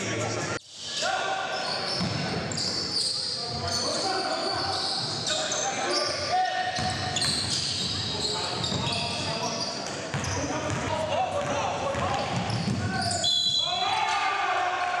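Live sound of a basketball game in a large gym: players' voices echoing, the ball bouncing on the hardwood floor, and short high squeaks. The sound drops out briefly about half a second in.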